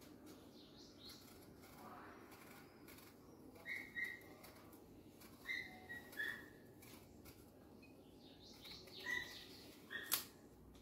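Faint scraping of a knife peeling an apple, with a handful of short, high, bird-like chirps scattered through, which are the loudest sounds.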